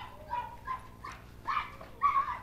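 Faint, short high-pitched cries and whimpers from worshippers in the congregation, about six brief calls in quick succession.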